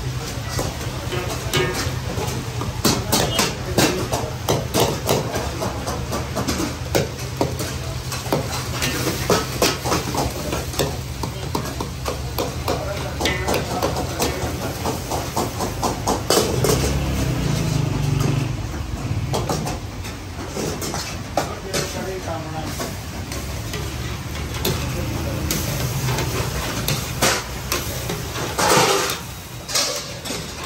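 Long metal spatula repeatedly scraping and knocking against an iron karahi wok as mutton and tomatoes are stirred over high heat, with the meat sizzling. A steady low rumble, likely the gas burners, runs underneath.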